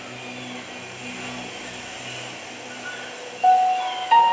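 Film soundtrack: a low, steady rumble with a faint regular pulse, then a held musical note comes in about three and a half seconds in.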